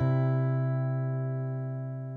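The song's final chord, struck on a guitar right at the start, then left ringing and slowly fading.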